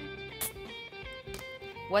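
Background instrumental music with steady held notes, and a short sharp hiss about half a second in.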